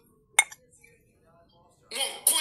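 A single short, sharp clink about half a second in.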